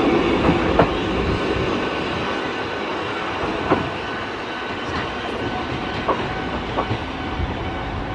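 Eizan Railway Deo 723, a single-car electric train, running away after departure, its running noise slowly fading as it recedes, with a few sharp clacks from the rails.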